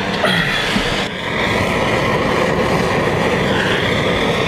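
Bernzomatic plumber's blowtorch, burning propane-butane gas, burning steadily with a loud hiss as it caramelises the sugar on a crème brûlée. There is a brief dip in level about a second in.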